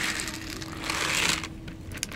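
Dry cat kibble pouring from a plastic bottle onto concrete paving stones: a rattling rush of small pellets with scattered clicks, loudest about a second in.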